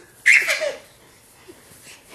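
A woman's short, breathy, excited 'oh' near the start, its pitch falling.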